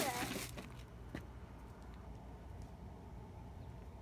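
Quiet outdoor background: a low steady rumble with a few faint clicks, after a voice trails off at the very start.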